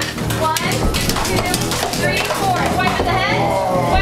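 A group of young people's voices chattering over background music, with scattered light knocks.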